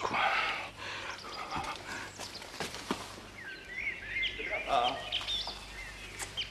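Small birds chirping in short rising and falling calls, beginning about three seconds in.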